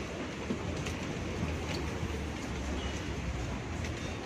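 City street ambience: a steady low hum of traffic and crowd noise, with a few faint clicks such as footsteps.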